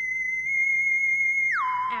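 Electronic sci-fi tone in the manner of a theremin: a single high pitch held steady, then sliding down about an octave near the end and holding at the lower pitch.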